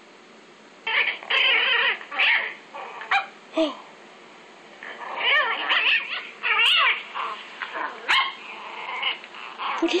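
A baby chihuahua puppy crying, played through a tablet's speaker: a run of high-pitched whimpering cries and yelps, each bending up and down in pitch, starting about a second in.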